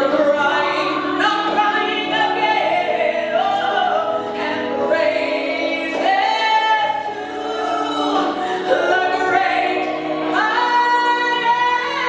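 A woman sings a worship song solo into a handheld microphone, in long held phrases. Near the end she climbs to a high, sustained, full-voiced note.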